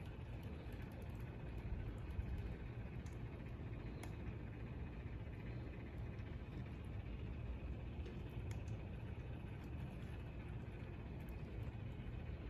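Small cup-turner motor running with a steady low hum, with a few faint clicks over it.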